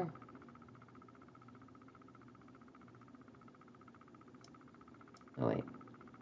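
Quiet room tone with a faint steady hum, and two faint clicks in the second half.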